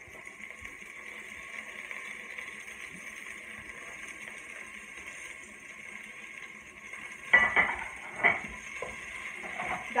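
Chopped vegetables dropped into a pot of hot oil with a steady sizzle. About seven seconds in comes a short run of clatters, a wooden spoon or plate knocking against the metal pot.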